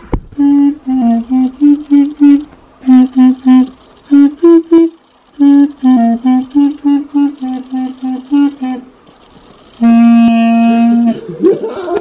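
Clarinet played in short, separate notes of a simple tune, with a brief pause about five seconds in, then one long held note about ten seconds in.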